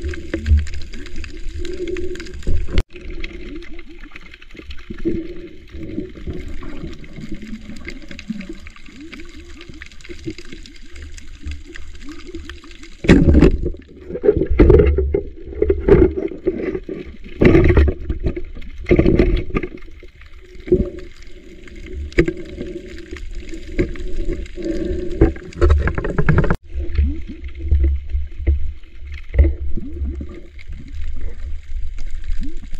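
Muffled underwater water noise: gurgling and a low rush of water, with louder irregular surges of sloshing and churning through the middle stretch.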